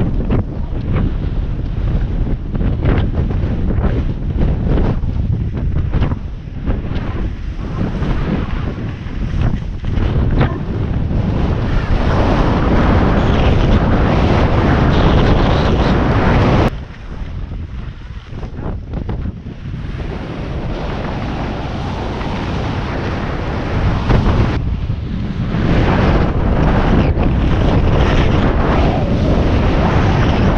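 Wind rushing over the camera microphone of a skier at speed, with skis scraping and chattering on firm, tracked snow. The rush drops suddenly about seventeen seconds in, then builds up again.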